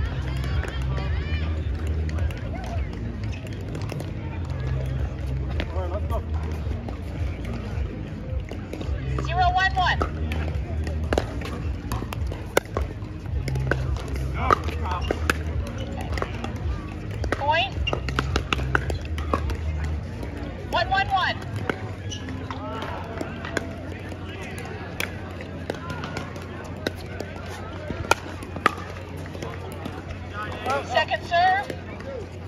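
Pickleball paddles striking a plastic ball, sharp pops scattered through a doubles rally, over background music with a heavy bass beat that stops about two-thirds of the way through. Short shouts and voices come in now and then.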